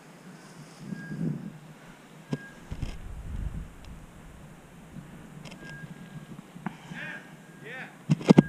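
Footsteps and rustling of a hunter walking through grass and brush, with a gust of wind on the microphone about a third of the way in and a few sharp clicks.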